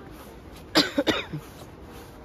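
A person coughing several times in quick succession, about a second in.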